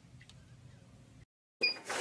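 Faint low hum with a few faint clicks, broken by a short dead silence, then a brief high-pitched beep near the end.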